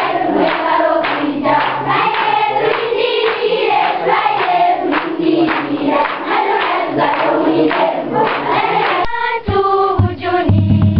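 A choir, a group of voices singing a song together. It breaks off abruptly about nine seconds in.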